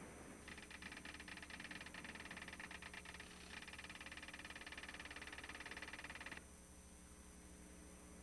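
Rapid electronic ticking, a typing sound effect for on-screen text printing out character by character. It runs for about six seconds with a short break about three seconds in, then stops, leaving faint tape hiss and hum.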